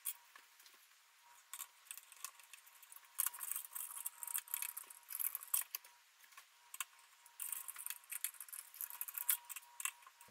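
Faint metal clicks and scraping from a long screwdriver turning the CPU cooler's mounting screws down through the tower, in three spells of a second or two separated by short pauses.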